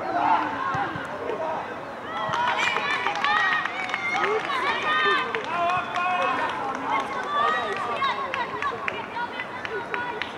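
Several young boys' high-pitched voices shouting and calling at once across a football pitch, overlapping throughout, with the busiest stretch from about two seconds in.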